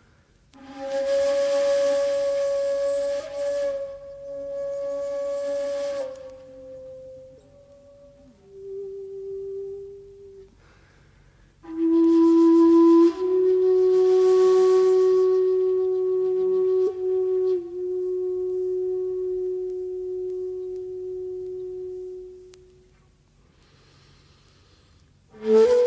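Shakuhachi playing slow, long held notes with breathy, airy attacks, separated by short pauses. The notes step downward; after a pause near the middle, one low note is held for about ten seconds and fades out near the end.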